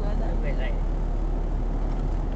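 Steady low road and engine rumble of a car cruising on a highway, heard from inside the cabin, with a brief spoken phrase about half a second in.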